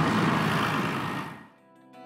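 Steady outdoor road-traffic noise that fades out about a second and a half in, giving way to soft music with sustained notes.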